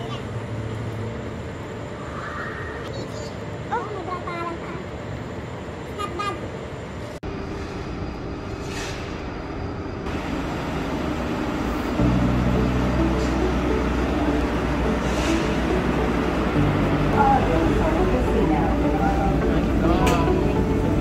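Low steady hum of an automated people-mover tram, louder from about twelve seconds in, with scattered background voices.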